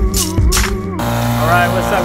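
Background music with a beat and a sung vocal, cut off about a second in. It gives way to an outboard motor running steadily at speed, with wind and water noise, as a man starts to talk.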